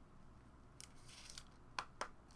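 Faint handling of trading cards and their plastic sleeves and holders: a few brief rustling scrapes, then a sharp click near the end.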